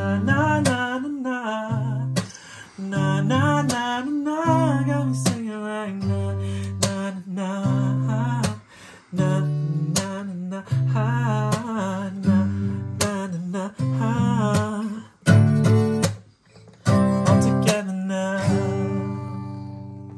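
Strummed acoustic guitar with a wordless sung melody, the closing bars of a song. It ends on a final chord that rings on and fades out near the end.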